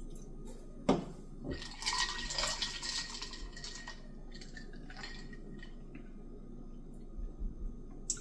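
A drink-drop squeeze bottle's flip cap clicks open, then the flavouring is squirted into a glass of sparkling water and ice, giving a couple of seconds of hissing liquid. After that come quiet clinks and handling of the glass as it is lifted and sipped.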